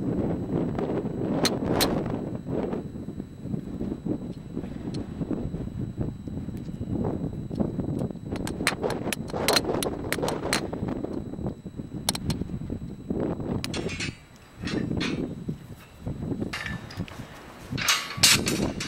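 Gusty wind buffeting the microphone as a fluctuating low rumble, with scattered sharp clicks and knocks throughout; the rumble drops away briefly twice near the end.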